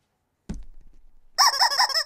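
Yellow rubber squawk chicken squeezed, giving a loud, wavering squawk for the last half-second or so. A soft knock comes about half a second in.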